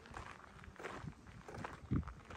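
Footsteps crunching on a gravel path, an uneven run of short steps with a louder one near the end.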